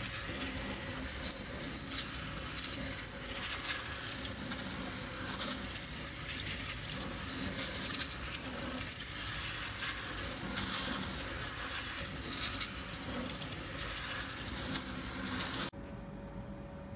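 Kitchen sink sprayer showering cold water over smoked sausages on a wire rack in a stainless steel sink: a steady hiss and patter of water that cuts off suddenly near the end. The spray is the cold-water bath that cools the freshly smoked sausages.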